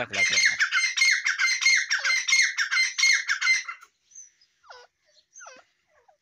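Caged francolins (teetar) calling: a fast, dense run of high, repeated calls for about the first four seconds, which then thins out into a few separate calls that slide down in pitch.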